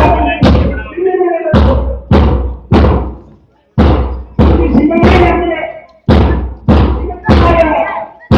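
A drum struck loud at a steady marching pace, about three beats every two seconds, with a short break about halfway through.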